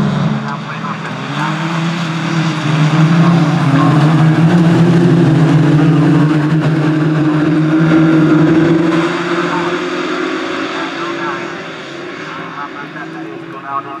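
Autograss junior special buggies racing on a dirt track, their engines running hard at high revs. The engines grow loudest as a buggy passes close about midway, then fade as the pack moves away.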